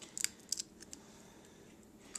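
A few light, sharp clicks from the broken duck eggshell as the egg white is tipped off the double yolk into a glass bowl. The clicks come close together in the first half-second, with one or two more just after, then the sound goes quiet.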